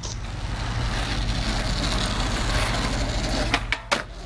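Steady rumbling noise with a low engine-like hum, then a few sharp skateboard clacks a little before the end.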